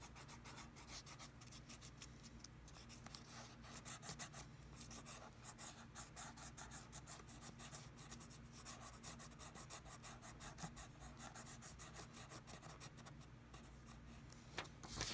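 Felt-tip marker scratching on paper in quick, short back-and-forth strokes, faint.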